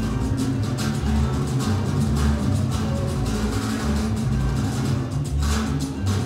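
Salsa music playing at a steady level, with a strong, moving bass line and regular percussion strokes keeping the beat.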